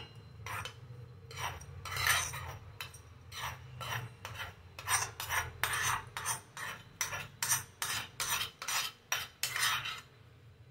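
Steel spoon scraping the inside of a steel tempering ladle, a quick run of short metal-on-metal scrapes and clinks, about one or two a second, over a steady low hum.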